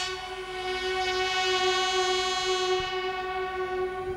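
Police buglers sounding one long held note together on brass bugles, part of a funeral bugle call. The note starts suddenly and holds steady at one pitch for nearly four seconds.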